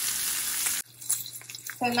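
Lamb chops sizzling as they sear in hot butter in a cast-iron skillet, a dense, steady hiss that cuts off abruptly a little under a second in. A quieter stretch with a faint low hum follows.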